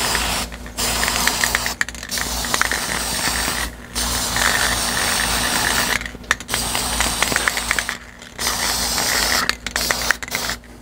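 Aerosol spray-paint can hissing in repeated bursts of one to two seconds with short breaks between them, as light coats of paint are dusted on. A light clicking rattle runs through parts of the spraying.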